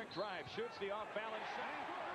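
A man's voice talking quietly: play-by-play commentary from the old game broadcast, heard well below the level of the reactor's own voice.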